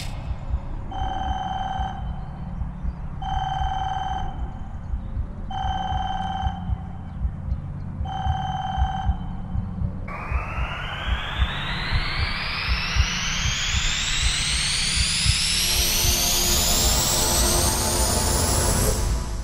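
Instrumental break of an urban beat: a telephone ring sounds four times, each about a second long, over a low pulsing bass. From about halfway, a rising whoosh sweeps steadily upward in pitch until near the end.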